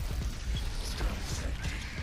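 Soft, even rumble and debris noise from the animated episode's soundtrack as a building collapses in a cloud of dust.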